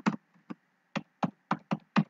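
Computer keyboard being typed on, one key at a time: about seven sharp clicks spaced unevenly, a quarter to half a second apart.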